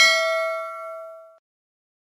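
Notification-bell ding sound effect: one bright bell strike that rings and fades out about a second and a half in.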